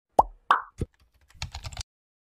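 Animated-intro sound effects: three short cartoon pops in quick succession, then a quick run of keyboard typing clicks as a name is typed into a search box.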